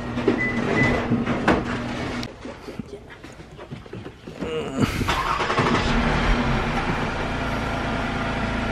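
A few knocks as a bag is handled at the car, then a Lexus SUV starts about five seconds in and runs steadily, with its ventilation fan blowing.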